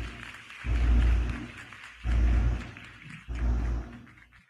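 Audience applauding, with four deep low rumbles about a second apart underneath.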